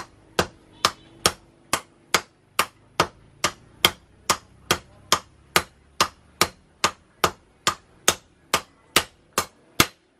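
Hand hammer forging a red-hot blade of leaf-spring steel on a steel post anvil: steady, evenly spaced blows, about two and a half a second, each a sharp metallic strike.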